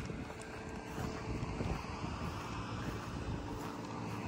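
Faint, steady outdoor background noise: a low rumble with a faint hum, no single event standing out.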